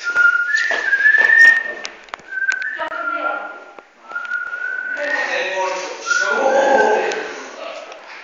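Someone whistling a series of short held notes that step up and down in pitch, with voices talking over it partway through.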